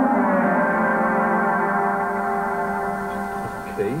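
Yamaha DX7 synthesizer playing a spaceship sound effect: a held, many-toned note that finishes sliding down in pitch, then holds steady and slowly fades.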